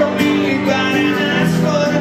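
Acoustic guitar strummed in a steady rhythm, with a man singing a song over it live.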